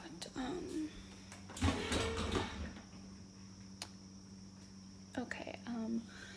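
Soft, partly whispered speech, with a brief rustling clatter of kitchen handling about two seconds in and a single sharp click in the middle, over a steady low hum.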